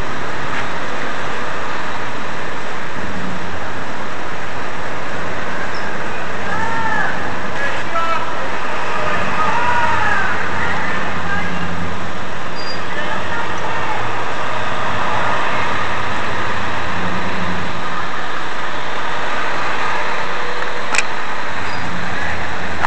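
Steady road traffic noise, a continuous rushing from passing vehicles.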